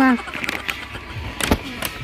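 A voice cut off at the very start, then a crinkly foil toy packet being handled, with two sharp crackles about three-quarters of the way through over a low background hum.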